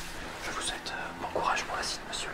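A person whispering, with short hissy sibilant sounds.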